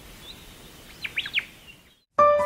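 Bird calls over quiet outdoor ambience: a short whistled note, then a quick run of several sweeping chirps about a second in. The sound fades away just before the end.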